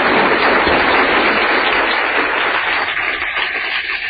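Lecture audience applauding, a dense, steady clapping that starts to die down near the end.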